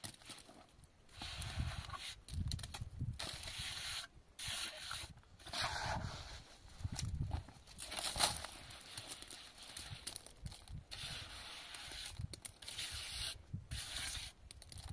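Hand trowel scraping and smoothing wet plaster along a roof edge, in a series of irregular strokes with short pauses between them.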